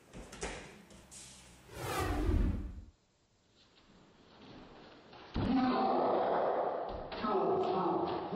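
A few sharp thumps and swishes of hand strikes and a partner taken down onto the mats, with a louder sweeping thud about two seconds in. After a short quiet gap, a man's loud voice carries on from past the middle.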